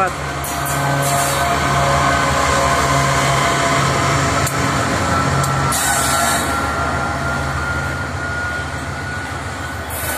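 GE AC44i diesel-electric locomotive, running as a mid-train unit, passing at close range: a steady engine drone with a high whine over it, loudest in the first half and easing off as the locomotive moves away and loaded grain hopper cars roll past. A short hiss comes about six seconds in.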